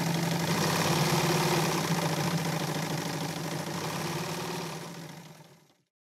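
Electric sewing machine running steadily, with a low motor hum and the rapid stitching of the needle, fading out near the end.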